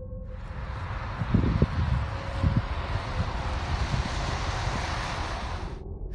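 Outdoor background noise: a steady hiss over a low rumble, with a few brief low thuds between about one and three seconds in.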